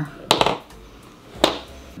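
Two sharp clicks about a second apart as makeup items are handled and set down on a tabletop.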